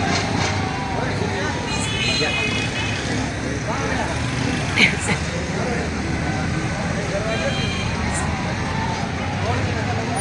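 Road traffic of a slow-moving vehicle convoy running steadily, mixed with the voices and calls of a roadside crowd, with a sharp loud knock or clap about five seconds in.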